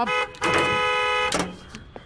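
Car horn honking: one steady blast of about a second, cutting off sharply.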